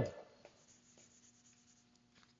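Faint rubbing of a whiteboard eraser wiping a word off the board, over a thin steady hum.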